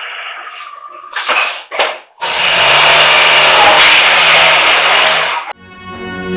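Toyota Corolla's petrol engine, unstarted for three years, running and revved hard: a few short bursts, then about three seconds of loud, steady running that cuts off suddenly. Orchestral music comes in near the end.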